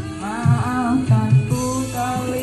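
A man singing dangdut koplo into a microphone over a karaoke backing track, its low drum beats hitting several times under his voice.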